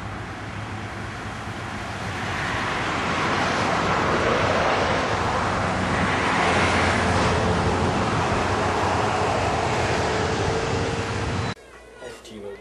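Car and traffic noise with no speech, growing louder about two seconds in and then holding steady, and cutting off suddenly near the end.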